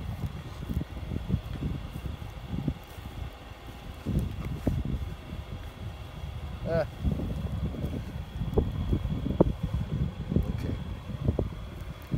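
Hands rustling and patting in dry grass close to the microphone, an irregular run of soft crackles and knocks over a low rumble.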